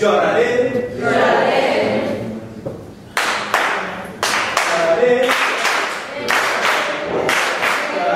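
A group of people singing together; about three seconds in, steady hand clapping joins the singing, roughly two to three claps a second.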